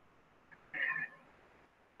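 A single short, high-pitched animal call about a second in; otherwise near silence.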